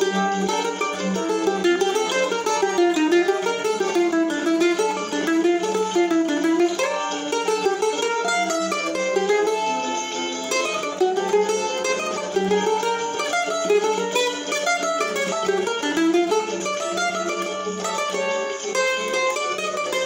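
Brazilian bandolim (mandolin) picked in quick runs of notes that rise and fall, playing a choro melody.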